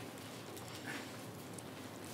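Bible pages being turned by hand: a faint papery rustle over quiet room hiss.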